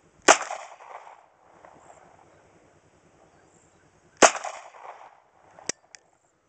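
Two shots from a Kel-Tec P-3AT .380 ACP pocket pistol, about four seconds apart. Each is a sharp crack followed by a fading echo.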